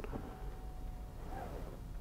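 A click as the touch button is pressed, then a faint, steady electric whine from the Nissan Ariya's motorised centre-console tray as it deploys, stopping about a second in.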